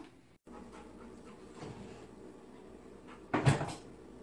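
Faint room noise, then a short double knock about three seconds in, like a wooden kitchen cabinet door banging.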